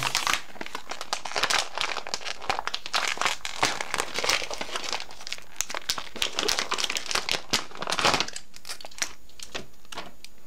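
Paper and cardboard packaging crinkling and rustling as hands work in an opened Apple Component AV Cable box. The crackling comes in dense clusters and eases off about eight seconds in.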